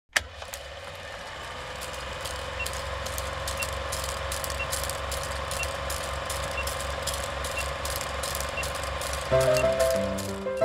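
Film-projector sound effect to an old countdown leader: a steady whir with rapid, regular clicking over a low hum, and a faint short beep once a second. Piano music comes in about a second before the end.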